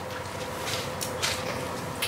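Bible pages being turned at a pulpit: a few short rustles in the middle of the moment, over a faint steady hum.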